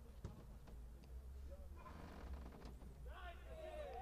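Faint field sound under a low steady hum: a few soft knocks, then distant shouting voices in the last second.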